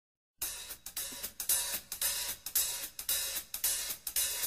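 A cymbal played alone as a song's intro, struck in a steady rhythm of about three strokes a second, each ringing briefly, starting about half a second in.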